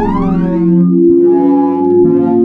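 Ambient experimental synthesizer music: layered tones sweep up and down in pitch, then settle into steady held tones about halfway through, over a sustained low drone.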